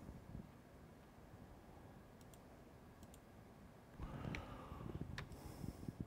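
Computer mouse clicks over faint room noise: a few soft clicks in the middle and two clearer ones near the end.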